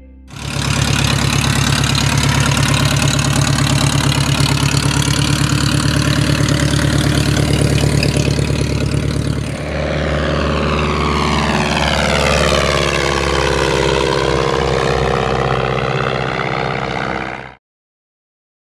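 Continental A65 flat-four engine and propeller of a 1946 Taylorcraft BC-12D running loud and steady at high power. About ten seconds in, the plane passes low by, its drone falling in pitch as it goes past; the sound cuts off abruptly just before the end.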